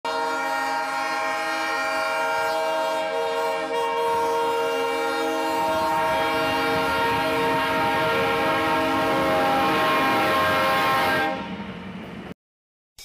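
GE B23-7 diesel locomotive's multi-tone air horn held in one long, steady blast, with the locomotive's rumble growing from about halfway as it draws near. The horn stops shortly before the end.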